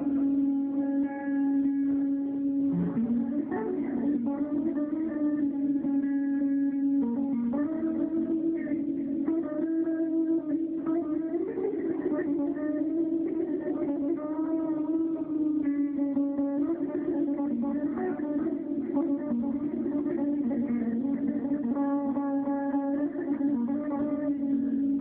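Red semi-hollow electric guitar played melodically, with shifting picked phrases over a steady sustained low drone.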